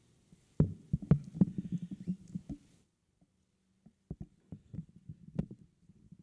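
Dull thumps and knocks close to a microphone, typical of microphone handling noise, in two irregular clusters: one starting about half a second in and one about four seconds in.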